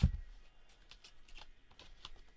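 A cardboard product box is handled. It gives a low thump as it knocks against something at the very start, then light taps and scuffs as it is moved.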